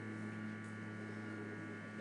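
Low, steady electrical mains hum with a string of evenly spaced overtones, carried by the microphone's sound system.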